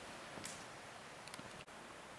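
A quiet pause, mostly faint hiss, with a few faint ticks: one about half a second in and a couple more just past the middle.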